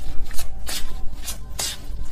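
Tarot deck being shuffled by hand: a quick run of short papery swishes, about three a second.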